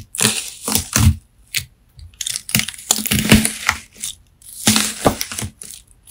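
A knife chopping through wax-coated melamine sponge soaked with slime, the hard coating breaking with crisp, crackling crunches in repeated bursts with brief pauses, the longest run in the middle. Picked up by a phone's built-in microphone.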